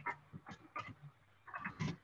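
Faint computer keyboard typing: a handful of soft, separate key clicks as a word is typed, with a short faint vocal sound near the end.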